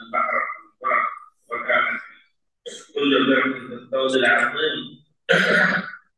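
Speech only: a man lecturing in short phrases broken by brief pauses.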